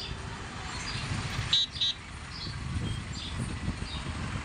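Lorries and a tractor driving past with their engines running, and a vehicle horn giving two short toots in quick succession about a second and a half in.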